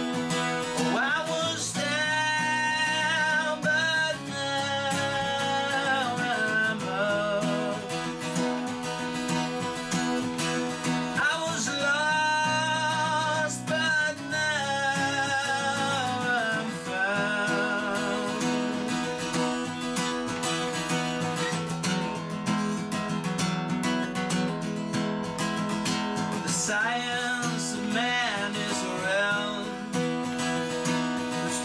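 Acoustic guitar strummed with a pick, steadily, with a man's singing voice over it in stretches of long held notes with vibrato.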